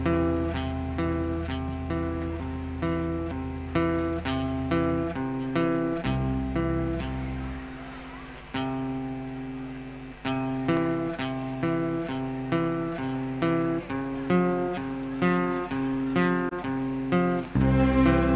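Live band playing an instrumental intro with no singing: acoustic guitars pick a steady, repeating run of notes. Bass guitar notes sit underneath; they drop out about five seconds in, briefly return, then come back near the end.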